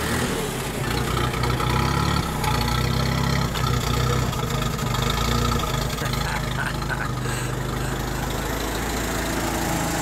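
A 1928 Willys-Overland Whippet Model 96's four-cylinder engine idling steadily, running sound just after starting up.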